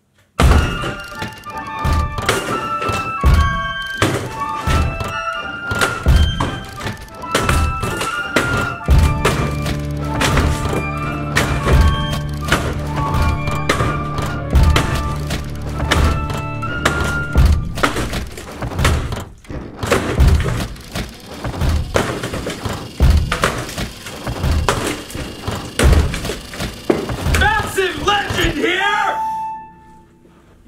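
An axe chopping through a wooden door: many heavy thunks at an uneven pace, over background music with a melody and, from about nine seconds in, a bass line.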